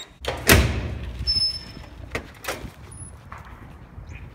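A door opening, with a loud burst of noise about half a second in, followed by a low rumble of wind and handling on the phone's microphone with a few small knocks.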